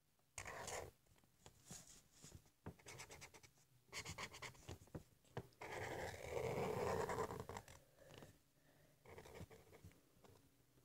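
Felt-tip marker scratching across paper in short, irregular strokes, with a longer, louder stretch of rubbing a little past the middle.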